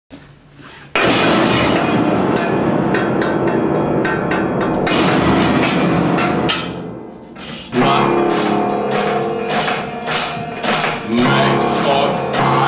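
Grand piano played loudly. About a second in it starts with a dense flurry of rapid hammered chords that fades away after several seconds. From about eight seconds, repeated chords ring on with sustained tones.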